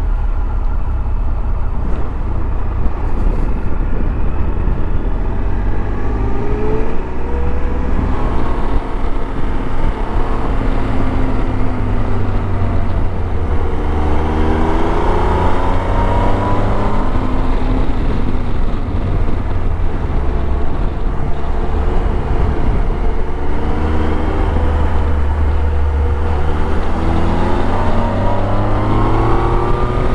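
Motorcycle engine running under way, its pitch climbing repeatedly as it accelerates and dropping back between, over a heavy low rumble of wind on the microphone.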